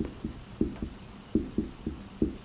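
Dry-erase marker writing on a whiteboard: about seven short, quiet strokes as a word is written out.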